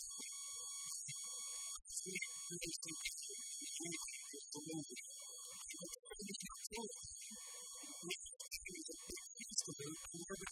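A man talking, muffled, over a steady high-pitched electrical whine.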